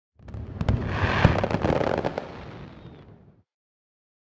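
A dense run of sharp cracks and pops over a low rumble. It builds quickly, fades, and cuts off after about three and a half seconds.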